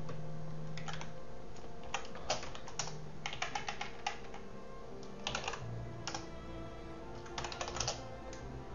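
Typing on a computer keyboard: irregular bursts of keystrokes with short pauses between them, over faint steady background music.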